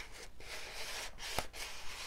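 A bone folder rubbing over paper to smooth it flat onto the board beneath, in a scraping sound that comes and goes. There is a small click about one and a half seconds in.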